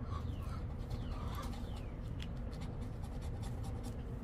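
A scratcher coin rubbing the latex coating off a scratch-off lottery ticket in a quick, irregular series of short scrapes.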